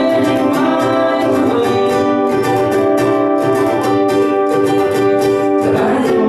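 Two ukuleles strummed in a steady rhythm under sung vocals, a live acoustic duet.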